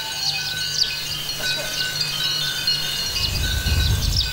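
Metal chimes ringing, many high, overlapping tones struck again and again and left to ring, over a faint low hum, with a low rumble rising near the end.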